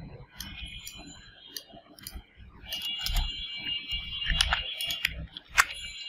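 A computer mouse clicking a number of times at irregular moments. A faint steady high whine comes in about halfway through.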